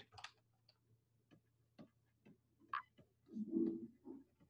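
Faint, irregular clicks of a pen stylus tapping on a tablet while handwriting, about one every half second, with a brief low murmur near the end.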